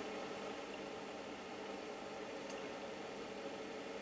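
Faint, steady hiss with a low hum underneath: room tone, with one tiny tick about halfway through.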